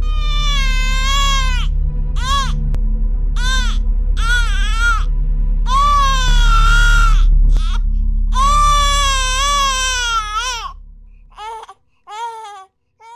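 An infant crying in a run of wails, some short and some drawn out, over a steady low hum that fades away shortly before the last few short cries.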